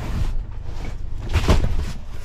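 Large cardboard parcels being handled and shifted in the back of a delivery van, with a soft knock at the start and a louder thump about a second and a half in, over a steady low rumble.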